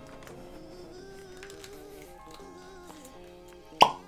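Faint background music, then near the end a single sharp pop as the cork stopper is pulled out of a bottle of Stagg Jr. bourbon.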